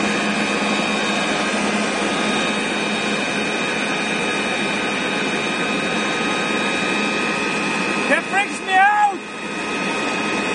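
Electric air blower running steadily with a whine, pumping air into a giant latex balloon. A voice calls out briefly about eight seconds in.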